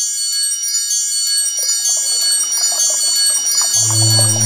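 Shimmering wind-chime tones in an intro sound effect. A rush of noise swells beneath them from about halfway, and a deep, steady bass tone comes in just before the end.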